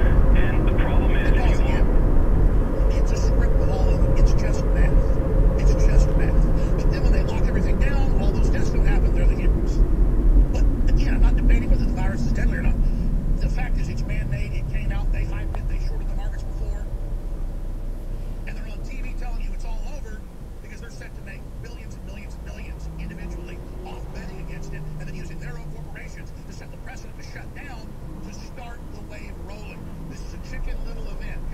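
Road and tyre noise inside a moving car, fading as the car slows and comes to a stop about twenty seconds in, after which only a quieter idle and passing traffic remain.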